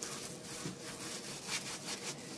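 Plastic-gloved hand rubbing over the surface of a set plaster cast in repeated strokes, a soft scratchy friction sound.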